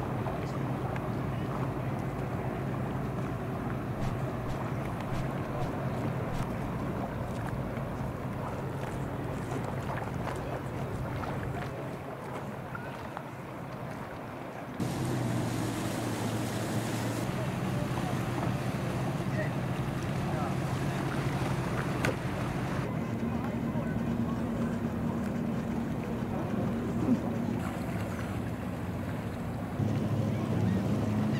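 Outboard motors on center-console boats running at low speed through a channel, a steady engine hum with wind and water noise. In the first half it comes from a pair of Yamaha 150 outboards. About halfway through the sound changes to another boat's outboard hum, and a higher engine note joins it later.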